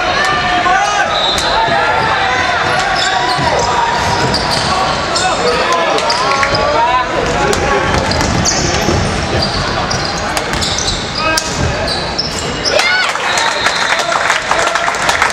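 Basketball game noise on a hardwood court: a ball bouncing, sneakers squeaking, and players and spectators calling out.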